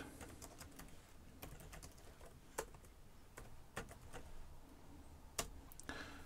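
Faint, sparse keystrokes on a computer keyboard as a terminal command is typed, each key a separate click at uneven gaps. Two of the clicks, about two and a half and five and a half seconds in, are louder than the rest.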